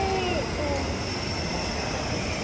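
Steady mechanical hum of a shopping-mall interior, with a few brief voices in the first half second.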